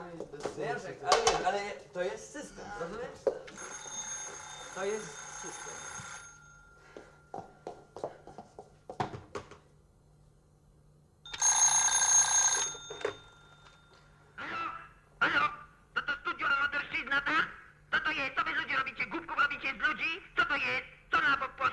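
Desk telephone bell ringing twice: a ring of a little under three seconds, then after a pause of about five seconds a louder ring of about a second and a half.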